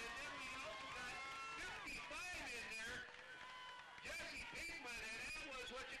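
People talking, with music playing underneath.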